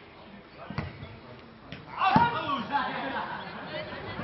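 Faustball being played: a few sharp thuds of the ball being hit and bouncing on grass. About two seconds in, players call out loudly.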